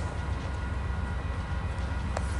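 VIA Rail GE P42DC diesel locomotive standing still, its engine running with a steady low rumble and a few faint steady tones above it.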